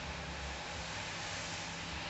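Steady rain hiss with the low, steady running of a Ford pickup's Power Stroke turbo-diesel engine and turbo underneath.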